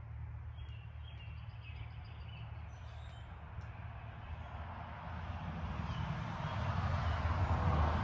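Steady low background rumble with a faint, quick series of bird chirps in the first few seconds. From about five seconds in, a rustling noise builds up, louder near the end.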